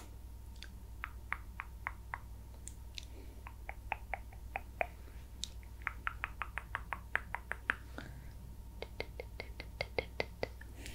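Quiet ASMR trigger sounds during face brushing: runs of quick, light clicks, up to about five a second, that come and go.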